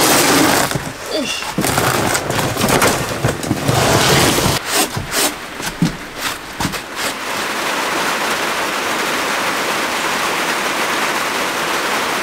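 Irregular scraping and knocking as a heavy cardboard mattress box is shifted and a sponge is rubbed over a van's bare metal floor. About seven seconds in, this gives way to steady rain falling on the van, heard from inside.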